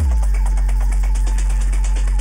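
Electronic dance music in a DJ mix: a very loud, deep sub-bass note swoops down in pitch at the start and then holds steady, with quick hi-hat ticks carrying on above it.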